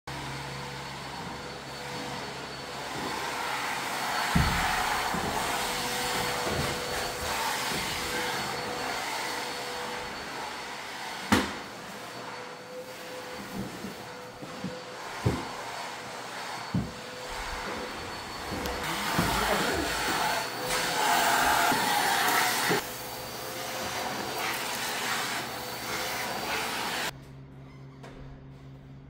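A vacuum cleaner running steadily, its noise swelling and fading as it is moved about, with a few sharp knocks along the way. It stops abruptly near the end.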